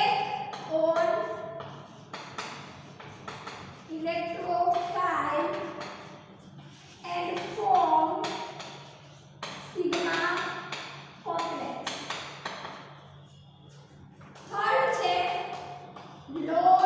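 A woman speaking in short phrases with pauses between them, with chalk tapping on a blackboard as she writes. A steady low hum runs underneath.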